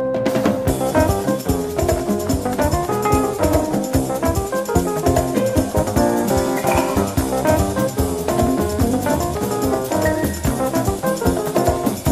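Big-band jazz recording: the full band with drum kit comes in sharply just after the start and plays a busy, driving passage.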